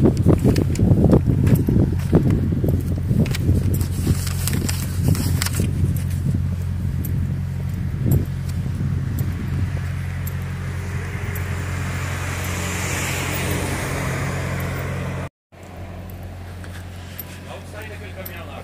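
Steady low drone of an idling diesel truck engine, with knocks and rustling on the microphone during the first half. The sound cuts out for a moment about three-quarters of the way through and comes back quieter.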